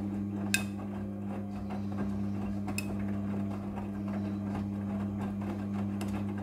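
Midea front-loading washing machine tumbling a load of clothes in its wash cycle: a steady low motor hum. Two sharp clicks sound about half a second and nearly three seconds in.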